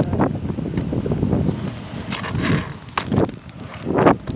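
Kick scooter wheels rolling over rough asphalt, a continuous gritty rumble, with a few sharp knocks, the loudest near the end.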